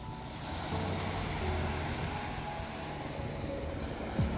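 Small waves breaking and washing up on a sandy beach on a calm sea: a steady wash of surf.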